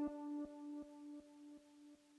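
The last held note of a multi-track MIDI song playing back from GarageBand, fading out, with a faint click repeating about every 0.4 s that fades with it.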